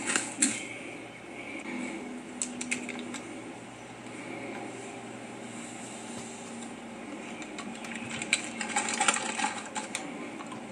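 A short laugh, then scattered clicks and crinkles of a plastic water bottle and a drink-mix packet being handled, with a denser run of clicks near the end.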